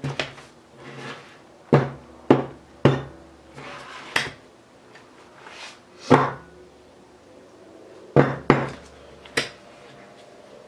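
Spiral-bound sketchbook knocking and bumping against a tabletop as it is tilted and moved about, about nine sharp knocks at uneven intervals.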